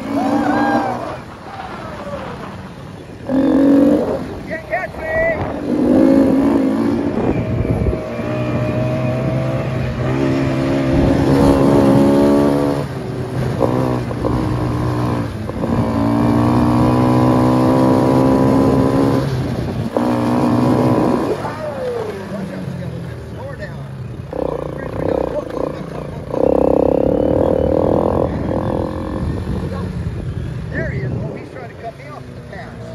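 Four-wheeler (ATV) engine running under way, holding a steady pitch for long stretches with brief changes of throttle. Short bends in pitch come in the first few seconds.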